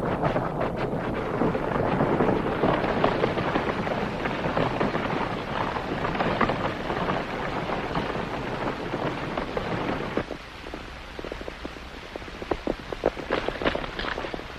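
A group of horses galloping, a dense clatter of hoofbeats that thins about ten seconds in to quieter, separate hoof strikes.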